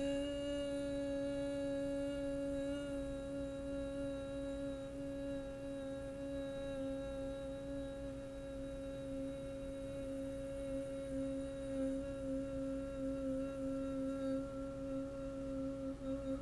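A woman humming one long note in her lower register with her lips closed, held at a single steady pitch without a break for as long as she can.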